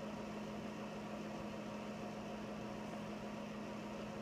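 Room tone: a steady low hum over a faint hiss, with no distinct events.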